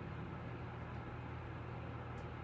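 Steady low hum with an even hiss: room tone.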